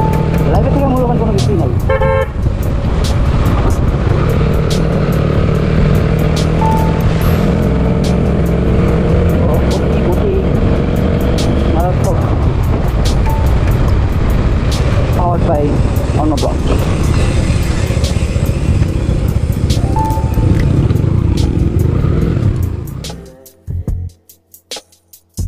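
Suzuki Gixxer SF motorcycle riding along, engine running under heavy wind noise on the microphone, with several short horn toots. The sound drops away shortly before the end.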